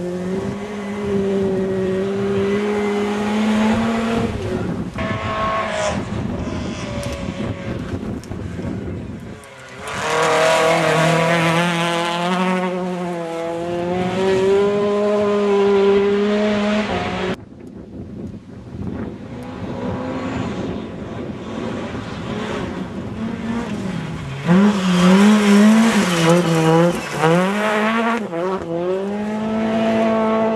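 Rally car engines on a gravel special stage, held at high revs and rising and falling in pitch through gear changes as the cars come through. The sound breaks off suddenly twice, about a third of the way in and again a little past halfway.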